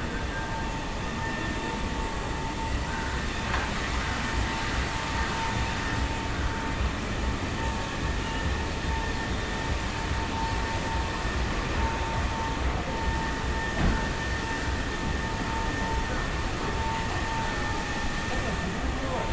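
Steady city street noise with a heavy low rumble and a constant thin high whine over it.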